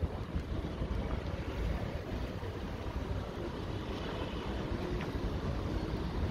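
Road traffic running past beneath an elevated interchange, a steady low rumble with wind buffeting the microphone.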